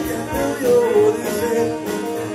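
Live soul-jazz band playing an upbeat groove: electric piano, electric guitar, saxophone and drums, with a melody line that glides around mid pitch.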